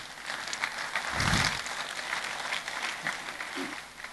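Audience applauding, swelling about a second in and fading away near the end.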